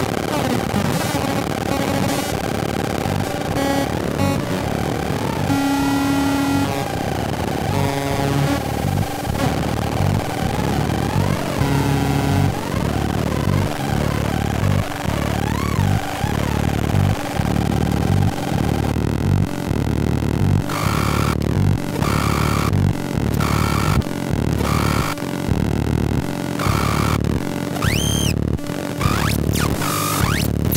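Homemade Atari Punk Console synth circuits, with added fuzz and a step sequencer, playing buzzy square-wave tones. Stepped pitch sequences give way to wobbling pitch glides as the knobs are turned; from about two-thirds through, a steady chopped pulse sets in, with a quick rising-and-falling whistle near the end.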